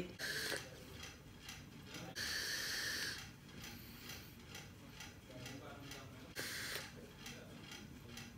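A pull on a Vaptio Wall Crawler box mod with Throne tank: airy hisses of air drawn through the tank's airflow. The longest lasts about a second near the middle and a shorter one follows later. Faint clicks are heard throughout.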